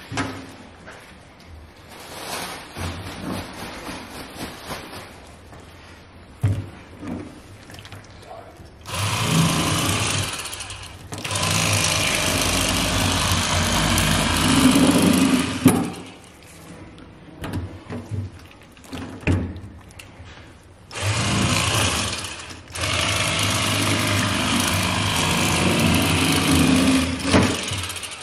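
Bubba Li-Ion cordless electric fillet knife running with its reciprocating blades buzzing as it cuts a kokanee salmon along the backbone. It runs in four bursts of about two to five seconds each, switched off in between.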